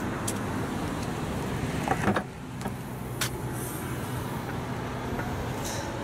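Vauxhall Astra hatchback tailgate being unlatched and lifted: sharp clicks and a short rising sound about two seconds in. A steady low engine hum runs underneath throughout.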